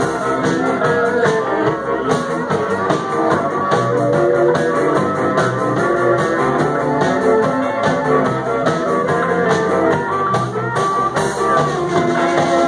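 Live blues-rock band playing an instrumental break of a rock and roll song: electric guitars, bass and drum kit keeping a steady driving beat, with a blues harmonica played over them. Loud and continuous, with no singing.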